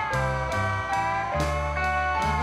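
Instrumental passage of a band song between vocal lines: sustained guitar notes that slide in pitch over a deep bass line, with steady drum hits.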